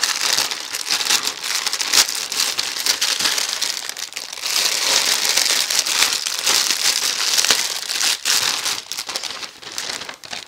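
Plastic packaging crinkling and crackling as it is handled: a white poly mailer is torn open by hand, then the clear plastic bag holding the shirt rustles as it is pulled out and handled.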